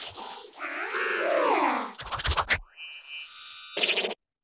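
Heavily pitch-shifted, effects-distorted music: a warbling pitched tone that bends up and down, a fast stutter of clicks about two seconds in, then a steady high electronic tone with hiss, cut off by a short loud burst at the end.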